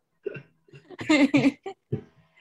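A person's voice making short vocal sounds without clear words, loudest about a second in.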